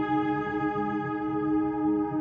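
Ambient background music: a held chord of steady, sustained tones over a softly moving lower part.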